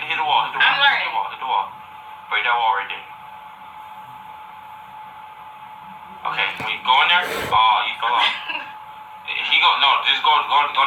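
People talking, with a quieter pause in the middle where only a faint steady hum and hiss remain, and one brief sharp knock about seven seconds in.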